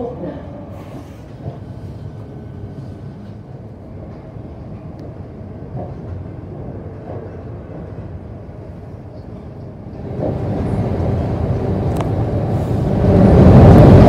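Suburban electric train running, heard from inside the carriage: a steady rumble of wheels on track. It grows louder about ten seconds in and louder again near the end.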